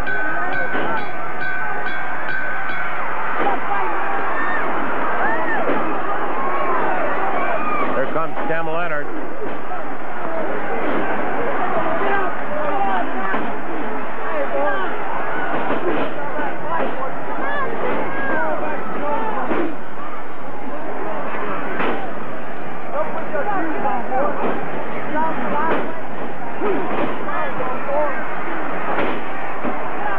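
Large arena crowd yelling and screaming steadily, many voices overlapping, during a wrestling brawl in the ring. A few sharp knocks cut through the din, and a shrill held whistle-like sound stands out in the first few seconds.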